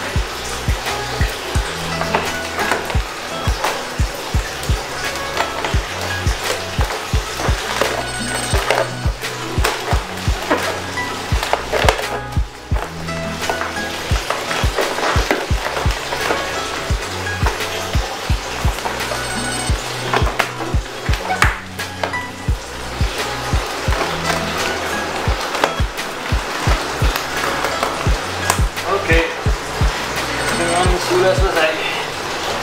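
Background music with a steady beat and a bass line.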